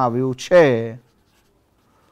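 A man's voice for about the first second, then near silence, with faint scratching of a felt-tip marker writing on paper.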